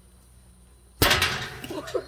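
A single sudden loud bang about a second in, a hard knock on the metal pipe pen panels, with a short ringing tail.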